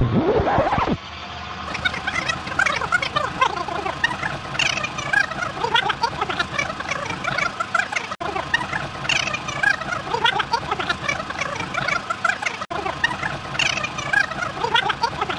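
Anycubic Kobra 2 Pro 3D printer printing: its stepper motors whine and chirp in quickly shifting pitches as the print head and bed move. A falling sweep sounds in the first second, and the sound breaks off briefly twice.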